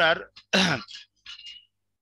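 A man says a word and then clears his throat, once and briefly, about half a second in, followed by a few faint short sounds.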